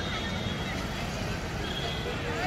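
Outdoor ambience of distant people calling and chattering on the riverbank, some voices rising and falling in pitch, over a steady low rumble.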